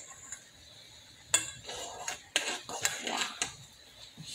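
Metal spoon clinking and scraping against a metal saucepan while stirring boiling tea, with several sharp clinks from about a second in.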